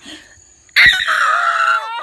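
A person's loud cry of pain from a snapping turtle's bite. It breaks out suddenly about a second in and is held for about a second with the pitch sliding down. A knock of phone handling comes as it starts.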